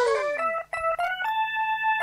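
Karaoke backing track in an instrumental gap: a long note slides down in pitch and fades out, then a few quick electric-keyboard notes lead into a held keyboard chord.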